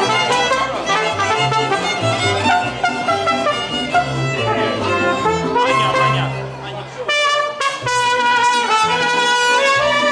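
Mariachi band playing live, violins and trumpet together, with a short dip in loudness about seven seconds in before held notes resume.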